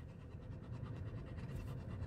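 A dog panting steadily inside a car, over the low rumble of the car's cabin.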